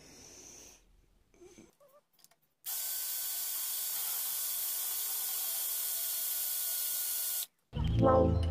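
Cordless drill running at steady speed, spinning the cross vise's threaded lead screw through its crank, a steady hissing whir. It starts about a third of the way in and cuts off suddenly near the end.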